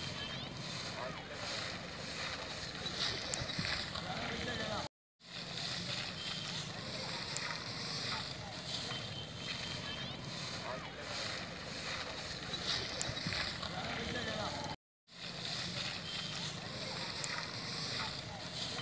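Outdoor field-recording ambience: steady background noise with faint voices of people nearby. The sound cuts out completely for a fraction of a second twice, about five seconds in and again near fifteen seconds.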